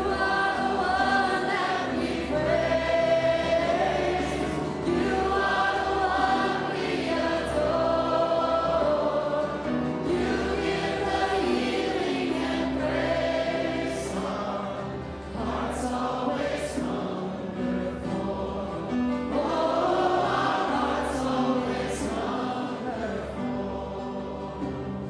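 A congregation singing a worship hymn together in long sung phrases, with steady low accompanying notes beneath the voices.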